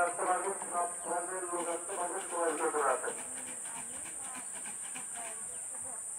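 A voice talking for about the first three seconds over a steady high hiss; after that only the hiss and faint background remain.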